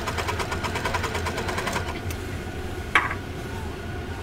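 Sewing machine stitching at a fast, even rate while couching yarn onto fabric. It runs a little quieter in the second half, with one sharp click about three seconds in.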